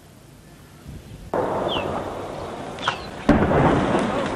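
Two blasts with a rolling rumble, the first about a second in and the second, the loudest, a little after three seconds in: shelling that destroys bunkers on a hillside.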